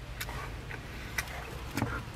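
Quiet car-cabin background: a low steady hum with a few faint, sharp ticks.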